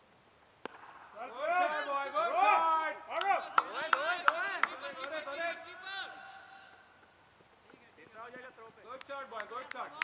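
A single sharp crack as a cricket ball meets the bat, then several players shouting over one another for a few seconds. Short, raised calls start up again near the end.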